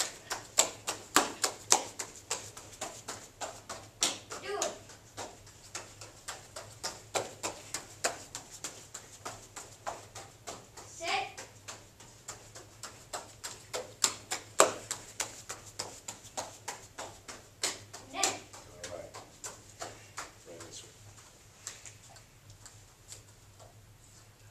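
Quick, irregular run of sharp slaps from a child's bare feet striking foam martial-arts floor mats, several a second at times, with a few short vocal bursts from the child. The slaps thin out and fade in the last few seconds.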